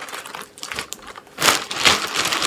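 Clear plastic bag crinkling and rustling as it is handled and opened, with the loudest rustles near the end.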